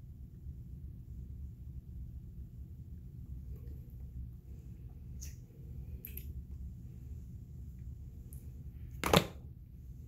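Quiet room with a steady low rumble, a few faint clicks, and one sharp knock about nine seconds in.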